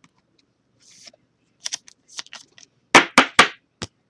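Baseball trading cards handled by hand on a tabletop: scattered light clicks and rustles, then a quick run of four sharp card snaps about three seconds in, with a few softer ones after.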